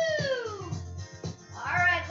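Background music with a steady low beat. Over it, a long voice-like note rises and falls at the start, and another begins near the end.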